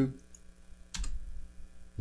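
A single press of a computer keyboard's space bar, one sharp click with a low thud about a second in, starting a motion recording.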